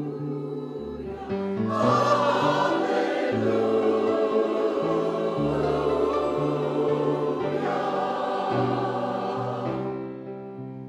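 Mixed church choir singing a sacred anthem, getting louder about a second and a half in and easing off just before the end.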